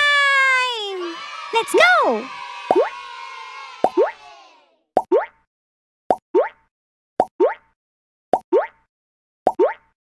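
Cartoon sound effects: a falling whistle-like glide and a springy boing, then a short double pop about once a second as a cartoon grape hops on pop-it fidget-toy bubbles.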